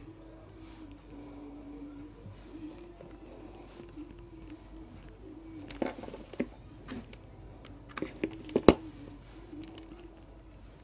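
Faint steady hum under a few short clicks and knocks from handling multimeter test leads and a USB cable at a power bank, the clicks bunched in the second half and the loudest near the end.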